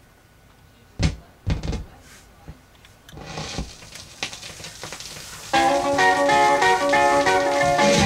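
A few sharp thumps as the stylus is set down on a spinning 45 rpm vinyl record, then surface hiss and crackle from the lead-in groove. About five and a half seconds in, a 1963 rockabilly single starts playing, with guitar to the fore.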